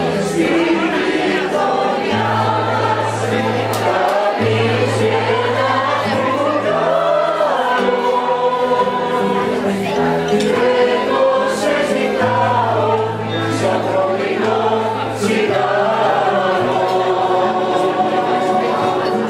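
A choir singing a song with instrumental accompaniment, the voices moving over long-held low bass notes.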